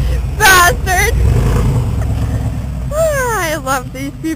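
A high, wavering voice cry about half a second in and again at about one second, and a long falling vocal cry near the end. Under them runs a steady low rumble of vehicle engine and wind.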